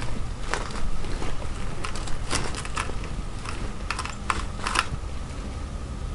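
About a dozen light, irregular clicks and ticks from gear being handled, over a low steady rumble.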